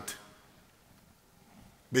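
Faint room tone in a pause between a man's spoken phrases. The end of one phrase trails off just at the start, and the next word begins at the very end.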